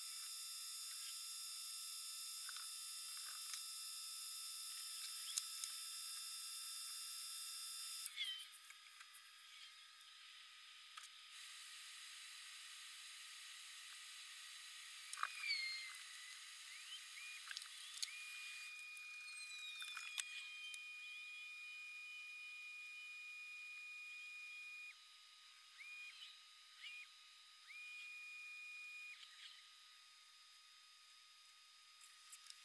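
Faint high-pitched whine over a steady hiss, its tones jumping abruptly to new pitches several times, with a few short gliding chirps and light clicks.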